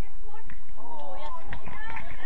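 Women footballers shouting to one another during play, with a high, drawn-out call from about a second in.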